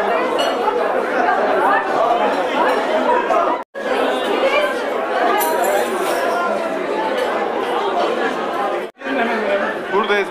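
Crowd chatter: many people talking at once in a large hall, a dense, indistinct babble of voices. It cuts out briefly twice, a bit over three seconds in and near the end.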